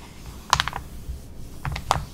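Fingers and fingernails tapping and shifting on the glossy pages of a magazine held open: a quick cluster of sharp little clicks about half a second in, then two more near the end.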